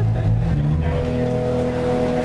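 Live band playing an instrumental jam: electric guitar, electric bass, keyboards and drums, with sustained notes held over a bass line that shifts about half a second in.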